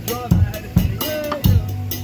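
Drum kit played in a steady beat, low kick-drum thumps and snare strokes about two a second with cymbal, and a voice singing over it.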